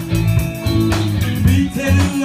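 Live rock band playing electric guitar and bass over a drum kit, with a heavy bass line and sharp drum hits.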